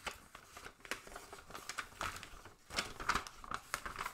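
A folded paper zine being unfolded by hand: soft, irregular paper rustling and crinkling with small crackles as the folds open out.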